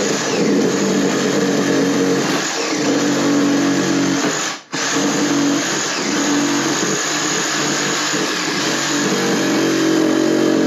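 Cordless power saw cutting through the wooden door-frame header, its motor running steadily under load. It stops briefly just under halfway through, then starts cutting again.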